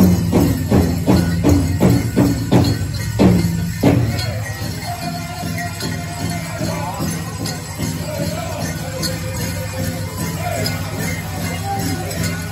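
Pow wow drum group striking a large drum in a steady beat, about three beats a second, with dancers' metal jingles shaking. The drumbeat stops about four seconds in, and voices and jingling go on.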